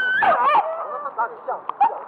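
Hunting dog whining with high, wavering cries, then a few short yips later on.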